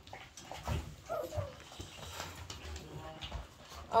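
Cocker spaniel puppy giving a few faint whimpers, about a second in and again near three seconds, over soft handling noise.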